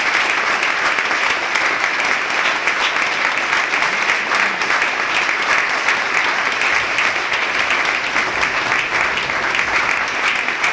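Audience applauding, a dense, steady clatter of many people clapping at once.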